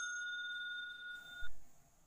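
A bell-chime 'ding' sound effect ringing out with a steady, slowly fading tone, cut off about one and a half seconds in. A brief dull thud sounds just as it stops.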